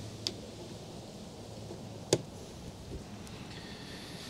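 Two short clicks from handling a plug at the inverter's AC outlet, a light one about a quarter second in and a louder one about two seconds in, over a faint steady low hum.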